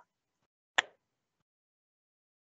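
A single sharp tap just under a second in, with a faint click at the very start.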